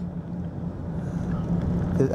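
Pickup truck driving, heard from inside the cab: a steady low engine drone under road and tyre noise.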